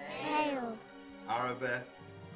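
Two short voiced calls, one about a second in after the first, as the plagues of Egypt are called out in turn, over steady background music.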